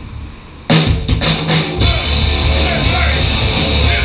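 Live punk rock band kicking into a song just under a second in: a few loud opening hits on drums and distorted guitars, then the full band of electric guitars, bass and drums playing at full tilt. A low amplifier hum is heard before the band comes in.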